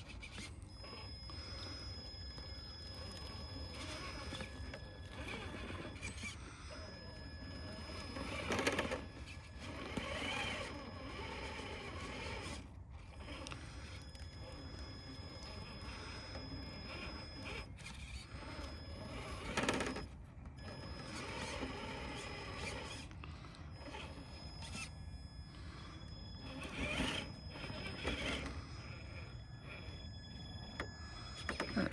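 Stock brushed motor and drivetrain of a Traxxas TRX4 High Trail RC crawler running in short spurts as the high-centred truck is worked free over tree roots, its tyres scraping and crunching on the roots. There are louder scrapes about 9, 20 and 27 seconds in.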